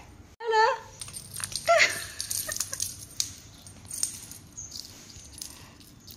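Domestic cat meowing at close range: one bending call about half a second in and a shorter one near two seconds in, followed by a few light clicks and rustles.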